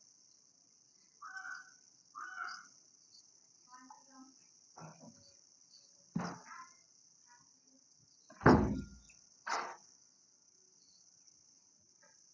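Mostly quiet room sound with a steady high hiss, a couple of brief faint voice fragments in the first few seconds, and several short knocks, the loudest a dull thump about eight and a half seconds in, followed by a lighter knock a second later.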